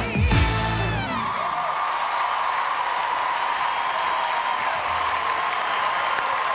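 The live band's quickstep music ends on a final chord about a second in, and the studio audience's applause and cheering take over and carry on steadily.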